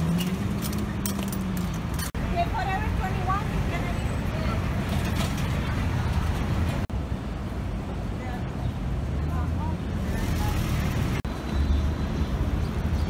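City street ambience: traffic running with a steady low rumble and passers-by talking. The sound cuts abruptly three times, about 2, 7 and 11 seconds in, as one street scene is spliced to the next.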